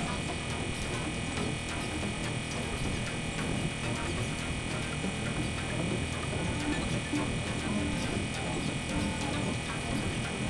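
Experimental electronic noise drone from synthesizers: a dense, buzzing, crackling texture with steady high tones held throughout. In the second half short low notes sound a few times.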